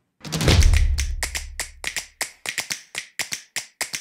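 A quick series of sharp taps or clicks, about four or five a second, with a deep low boom under the first two seconds.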